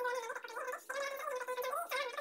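A woman talking, her voice thin and high-pitched with no low end.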